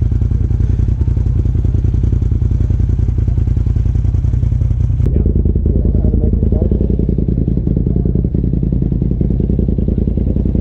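Polaris RZR side-by-side's engine idling steadily with a rapid, even pulse. The tone changes abruptly about halfway through.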